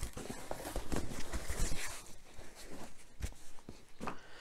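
Handling noise: scattered light knocks and rustling as hard plastic graded comic book slabs are moved about in their shipping box, with a slightly firmer knock a little after three seconds in.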